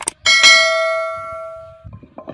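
A sharp click, then a bright bell ding that rings out and fades over about a second and a half: the sound effect of a subscribe-button animation.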